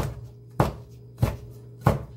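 Kitchen knife slicing chili peppers against a cutting board: four sharp chops about two-thirds of a second apart.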